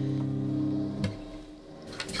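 A held guitar chord ringing steadily, then stopped about a second in with a click, after which the sound falls away.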